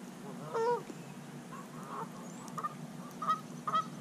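Geese honking: about five short calls, the loudest about half a second in and two close together near the end.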